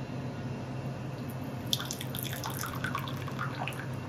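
Water poured from a wooden box ladle into a small ceramic tea cup: a light knock about two seconds in, then a short, bubbly trickling splash.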